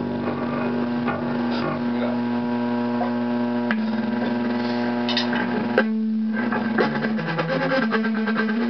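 Electric guitar and bass through amplifiers in a small room: held ringing notes and amp hum with loose noodling rather than a full song, a sharp click about six seconds in, and busier plucking toward the end.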